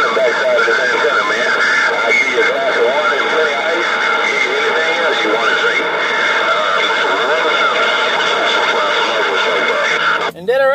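Galaxy radio transceiver's speaker playing received radio traffic. Voices are buried in loud, steady static, too garbled to make out.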